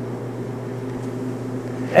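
Steady low mechanical hum of room background noise, holding an even pitch through a pause in speech.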